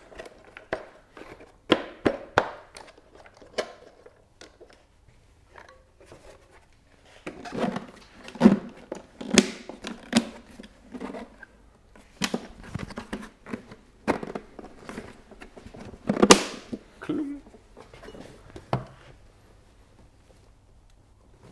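Irregular plastic clicks, clacks and knocks from handling a car's plastic air filter box as a cotton sport air filter is fitted, the box closed and mounted on an adapter. Several louder knocks stand out among the lighter clicks.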